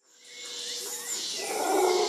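Intro sound fading in from silence and swelling over the two seconds: a noisy wash with a few faint gliding tones, ahead of the song's beat.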